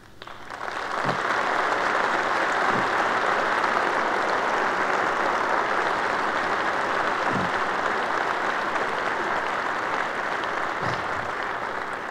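Audience applauding, building up over about a second into steady, sustained clapping that eases slightly near the end, with a few brief shouts rising out of it.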